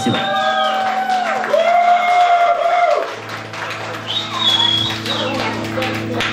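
A live ska-punk band's song ending: long held notes with shouted calls, then a low steady drone from the stage and scattered applause and cheering from the audience.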